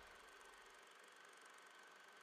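Near silence: faint hiss after the music has faded out.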